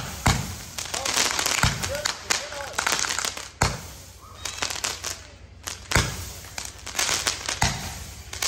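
A multi-shot consumer fireworks cake firing. Sharp bangs come every second or two, about five in all, with dense crackling and fizzing between them as the stars burst.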